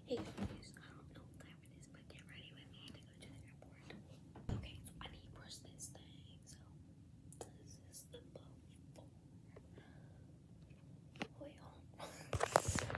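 A girl whispering quietly, with a couple of soft knocks near the start and about four and a half seconds in.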